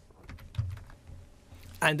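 Computer keyboard keys clicking quietly, a few keystrokes in the first second as a web address is typed and entered.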